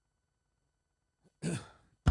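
More than a second of near silence, then a man's short, breathy vocal sound from the throat near the end.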